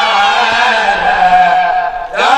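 A young man's solo voice chanting Arabic Maulid praise poetry through a microphone, holding one long melismatic vowel that sinks slowly in pitch and breaks off just before the end.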